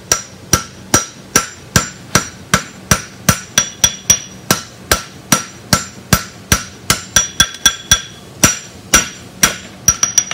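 Blacksmith's hand hammer striking red-hot steel on an anvil, a steady run of blows about three a second with some quick double taps. Each blow is followed by a short metallic ring from the anvil.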